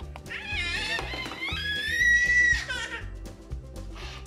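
A toddler boy's long, high-pitched excited squeal, rising in pitch and then held for about two seconds before breaking off, over background music with a steady beat.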